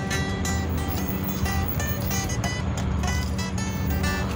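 Acoustic guitar strummed through an instrumental passage, chords struck again and again and ringing, over a steady low rumble.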